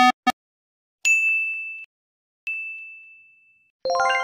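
Two single bell-like dings, about a second and a half apart, each struck sharply and ringing out on one high note: a sound effect. At the very start the last short ticks of a spinning-wheel effect end, and a chiming musical sound begins just before the end.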